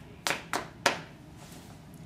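Three quick, sharp knocks about a third of a second apart: a knock at a door, acted out on stage.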